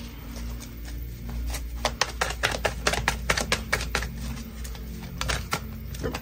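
Tarot cards being shuffled by hand: a run of quick, irregular clicks and snaps from the cards that starts about a second and a half in and stops shortly before the end.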